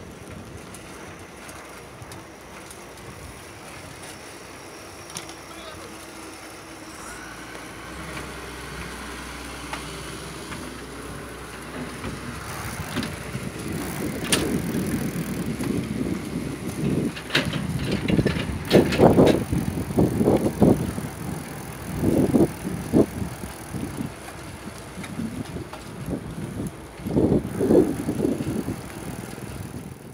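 Bicycle ride along a paved road: steady riding noise at first, then people's voices breaking in from about halfway in short, loud bursts that are the loudest sounds.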